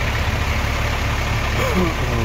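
Yutong coach's diesel engine idling, a steady low rumble heard close to the rear of the bus.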